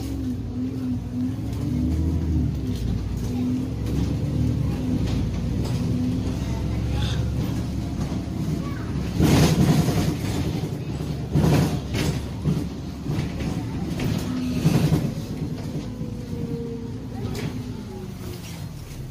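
Inside an Alexander Dennis Enviro 400 double-decker bus on the move: a steady low engine and road rumble, with a wavering drivetrain whine over the first several seconds. Loud rattles and knocks come about halfway through.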